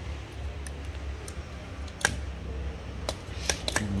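A few sharp plastic clicks, the strongest about halfway through and three more close together near the end, as the reverse switch on a used electric die grinder is flipped back and forth.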